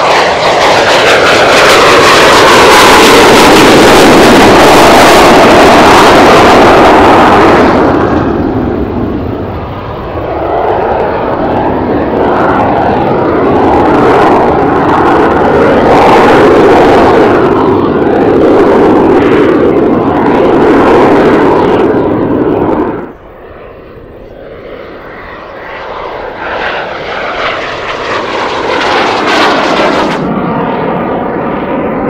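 BAC 167 Strikemaster's Rolls-Royce Viper turbojet, very loud on a low fly-past with its pitch sweeping down as it goes by. It then rises and fades as the jet climbs and turns, drops away sharply about two-thirds of the way through, and builds again near the end.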